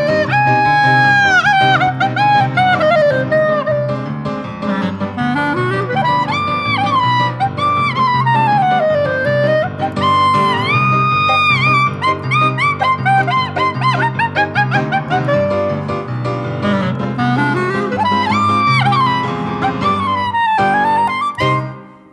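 Klezmer freilach in C minor on clarinet and piano. The lead melody has many sliding, bending notes over a steady rhythmic piano accompaniment. The music drops away sharply near the end.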